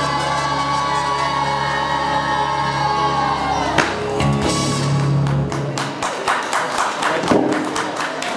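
Boys' choir holding the final chord of a song over a recorded backing track; the music stops about four seconds in, and audience applause and cheering follow.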